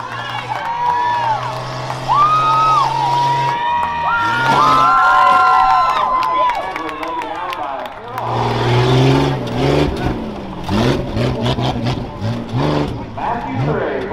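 Rough truck's engine running on the dirt track, then revving hard in a series of rising pulls from about halfway through. Shouting voices of nearby spectators sound over the engine in the first half.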